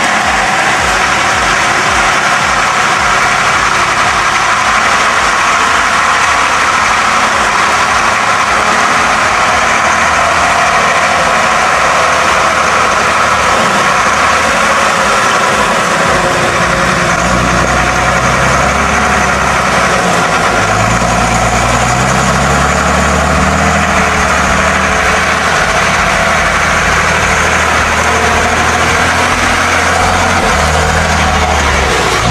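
Engine of an old heavy truck loaded with logs, working through deep mud; the engine note grows stronger past the middle and climbs in pitch a little after twenty seconds in.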